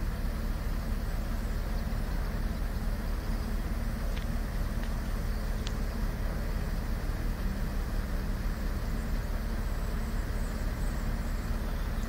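Mobile crane's diesel engine running at a steady low drone while it lowers a drilling rig's flare stack.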